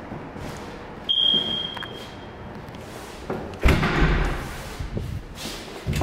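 A door swinging shut with a heavy thump about three and a half seconds in, preceded about a second in by a short, high, steady tone that fades out.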